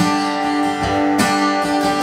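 Acoustic guitar strummed, a chord struck at the start and another just over a second in, each left ringing.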